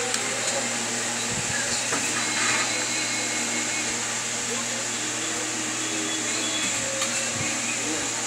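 A steady rushing background noise with faint voices underneath and a few soft knocks.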